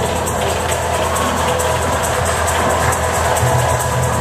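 Electronic music with a steady beat and a heavy bass line, played over a stadium's loudspeakers.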